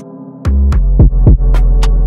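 Trap instrumental beat. The deep 808 bass drops out briefly, then comes back in hard about half a second in, with pitch-falling 808 kicks and crisp hi-hat and snare hits.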